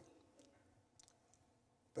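Near silence: hall room tone in a pause between speech, with a few faint clicks.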